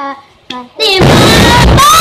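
A child's sung note trails off, then about a second in a sudden, very loud thunderclap crashes in, with children's startled voices over it.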